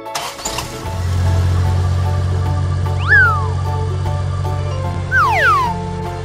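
Children's background music with cartoon sound effects: a steady low engine-like rumble starts about a second in. Over it come two whistle-like pitch glides, a quick rise and fall about three seconds in and a longer falling glide just after five seconds.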